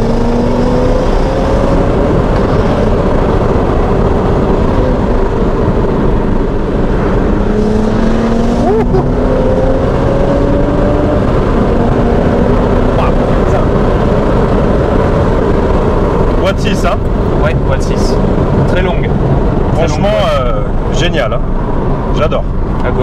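Inside the cabin, a stage 2 BMW 135i's turbocharged inline-six with a modified exhaust pulls under acceleration, its pitch climbing in several separate pulls.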